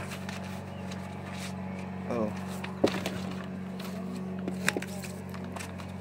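Steady low hum inside a bus, with a few sharp clicks and rustles from handling a folder of papers.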